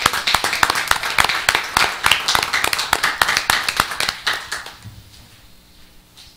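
A roomful of people applauding, a dense run of hand claps that dies away about five seconds in.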